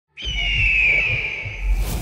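A large cartoon bird of prey gives a screech: one long high cry that slowly falls in pitch, over a low rumble. It ends in a whoosh near the end.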